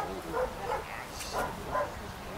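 A dog giving several short, high yips and barks in quick succession, about five in two seconds.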